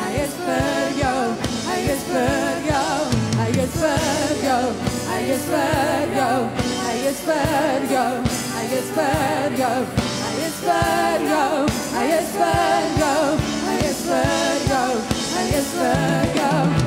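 Live worship song: women singing into microphones over a band, with a drum kit keeping a steady beat.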